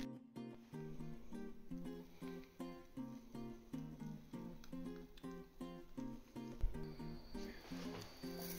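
Background music: a guitar picking a steady, repeating pattern of notes, with one low thump late on.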